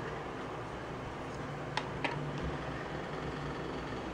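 Steady low background hum and hiss of room noise, with two faint short clicks about halfway through.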